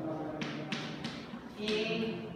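Chalk writing on a chalkboard: about four short strokes in two seconds, each a sharp tap of chalk on the board trailing into a brief scrape.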